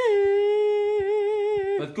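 A woman wailing as she cries: one long, high note held at a single pitch, breaking off shortly before the end.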